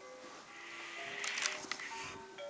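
A musical toy plays a faint electronic tune of held notes. About a second in comes a short burst of rustling with a few clicks.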